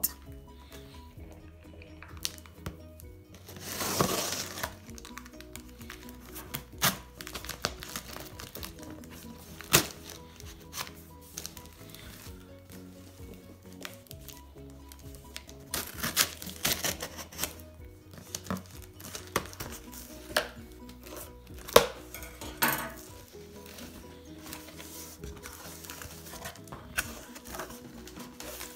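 Cardboard shipping carton and packaging being handled and opened: crinkling, knocks and scrapes, with a longer tearing or scraping burst about four seconds in, over background music.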